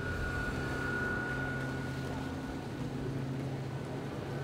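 Boat motor running steadily: a low, even drone with a thin high whine over it that fades out about halfway through.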